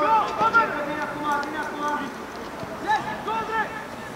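Footballers' voices shouting and calling to each other across the pitch during play, loudest right at the start and again about three seconds in.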